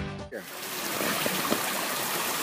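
Guitar background music cuts off a moment in. After it comes a steady rush of water flowing through a concrete river intake channel.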